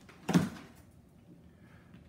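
A cardboard box flap being pulled open, one short sudden cardboard sound about a third of a second in, followed by faint room sound.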